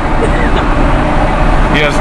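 Steady, loud road and wind noise heard inside the cabin of a moving car, a deep rumble with a hiss over it.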